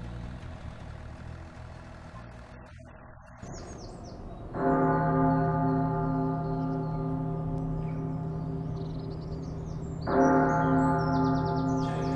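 A church bell tolling twice, about five and a half seconds apart. Each stroke rings on and slowly dies away, with birds chirping. A low, fading sound fills the first four seconds before the first stroke.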